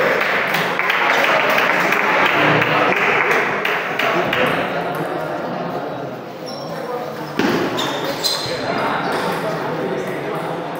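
Celluloid-style table tennis ball clicking off paddles and the table in a short rally, a few sharp ticks in the second half. Under it is the echoing chatter of a busy hall.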